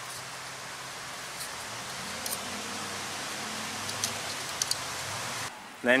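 A steady hiss with a few faint clicks as the aluminium tile trim is bent back and forth at the saw cut to fatigue off the uncut remainder. The hiss cuts off suddenly near the end.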